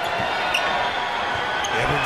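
Steady arena crowd noise at a basketball game, with a few faint bounces of a basketball dribbled on the hardwood court.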